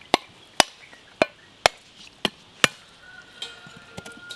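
Machete blade striking a husked coconut, six sharp knocks about two a second, cracking the shell open.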